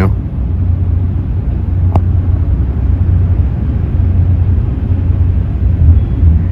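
Steady low rumble of city road traffic, with one short click about two seconds in.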